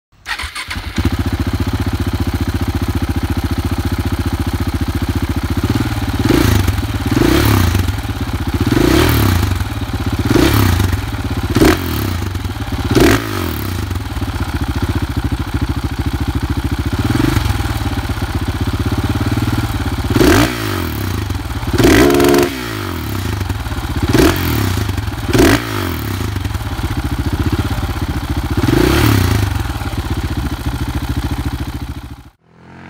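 KTM 690 SMC-R's single-cylinder engine through a WINGS aftermarket exhaust, idling steadily and then blipped about a dozen times from about six seconds in. Each rev rises and drops quickly back to idle, and one past the middle is held a little longer.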